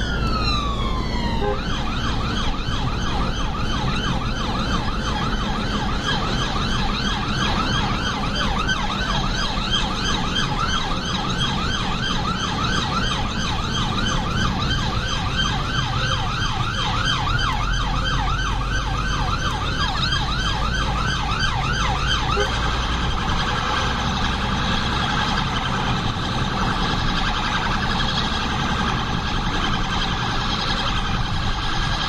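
The emergency car's own two-tone electronic siren, heard from inside the cab. A wail falls away at the start, then a fast rising-and-falling yelp runs for about twenty seconds and switches near the end to an even quicker warble, all over the car's engine and road rumble.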